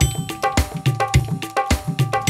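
Yamaha electronic keyboard playing an instrumental introduction with a quick, even percussion rhythm: a cowbell-like ringing tone on the beats over a pulsing bass line.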